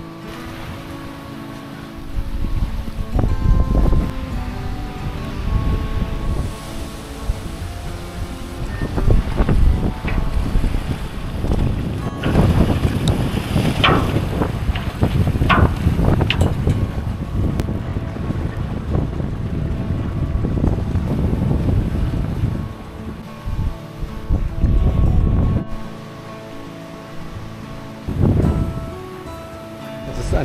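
Wind buffeting the microphone in heavy gusts beside a choppy lake, starting about two seconds in and easing off near the end, over soft background music.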